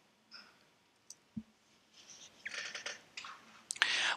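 A quiet pause with a few faint, sharp clicks and one soft low thump about a second and a half in.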